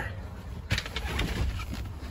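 A thump and rustling as someone climbs up into a pickup's cab and settles into the seat, over a low steady rumble. The thump comes about two-thirds of a second in.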